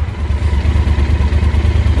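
Yamaha Super Tenere's parallel-twin engine idling, a steady low pulsing rumble.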